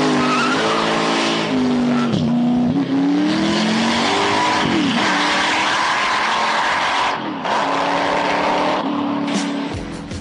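Weineck Cobra replica's V8 at full throttle, its rear tyres squealing as it launches, the engine note climbing and dropping back three times as it shifts up through the gears.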